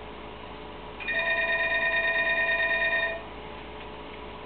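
An electronic telephone ringing once: a fluttering ring of several steady tones that starts about a second in and stops about two seconds later.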